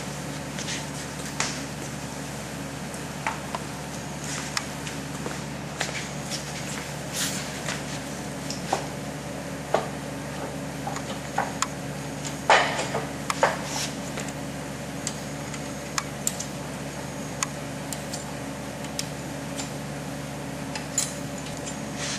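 Scattered metal clinks and knocks as the lower half of a split-frame clamshell pipe machine is handled and fitted onto a pipe, the loudest knock about halfway through, over a steady low hum.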